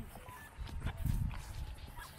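Hoofbeats of a horse galloping away over turf, with faint voices nearby.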